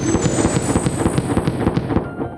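Cartoon firework sound effect: a sudden burst followed by rapid crackling pops, with thin high whistling tones sparkling above.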